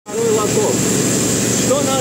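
Steady, loud rushing noise of a running plasma-spray installation, the plasma gun burning with its process gases.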